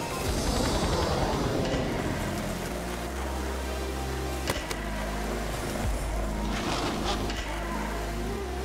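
Background music with a deep, steady bass, over the rolling of skateboard wheels, with one sharp click about four and a half seconds in.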